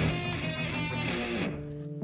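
Background intro music with strummed guitar. About a second and a half in, the higher parts drop away and only a low held note is left, fading as the music ends.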